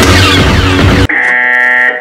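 Loud music is cut off abruptly about a second in by a steady, harsh 'fail' buzzer sound effect, like a game-show wrong-answer buzzer, held for about a second. The buzzer marks a failure.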